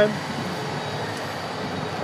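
Steady outdoor background noise, an even hiss with no distinct events.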